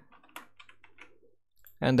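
A few faint computer keyboard keystrokes in quick succession.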